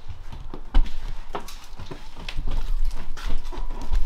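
Footsteps walking across a hard floor, irregular knocks about a second apart with low thuds, mixed with handling noise from the moving camera.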